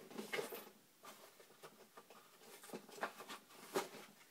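Faint, scattered light taps and rustles of paper card stock being handled on a cutting mat.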